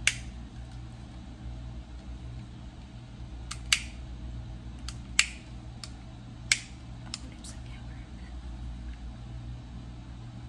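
A handheld lighter being clicked over and over: about half a dozen sharp, unevenly spaced clicks over a low steady hum.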